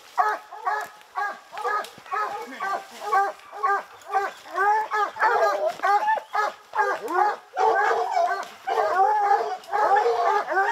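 A pack of bear hounds barking and bawling, several dogs at once in quick overlapping calls. The barking grows denser and louder about halfway through. It is the sound of hounds baying a bear that has been caught in a hole.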